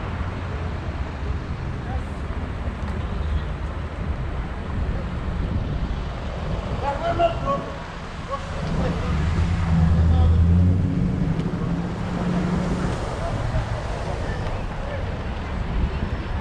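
City street traffic heard from a moving bicycle: a steady low rumble of passing cars, with one vehicle's engine passing close and loudest about ten seconds in.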